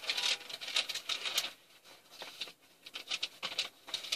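A folded concert banner being opened out by hand, its sheet crinkling and rustling. The rustling is densest in the first second and a half, then thins to lighter scattered crackles and handling ticks.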